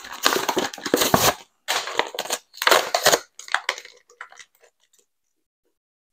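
Toy-car packaging being opened by hand: a run of loud crunching and crackling bursts, dying away to a few faint crackles and stopping about five seconds in.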